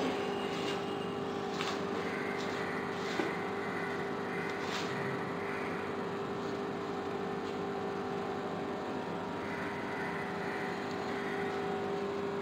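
A steady background hum with one held tone and a faint hiss. A few faint soft rustles come from hands working coarse sand and coir pith in a plastic tray.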